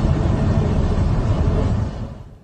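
Steady, loud roar of jet aircraft engines running on an airport apron, deep and even.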